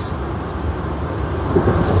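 Steady low rumble of car cabin noise, from engine and road, picked up by a phone inside the car.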